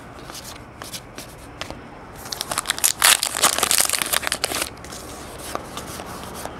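Baseball trading cards being flicked and slid through the hands, with scattered light clicks, then a dense rustle of card and paper about two seconds in that lasts some two and a half seconds.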